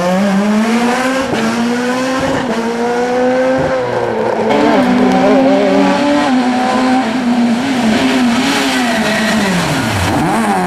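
Rally car engines revving high and accelerating hard through the gears, one car after another. The pitch climbs and then drops back with each upshift, about every second or so, and falls sharply just before the end as the next car lifts off and then accelerates again.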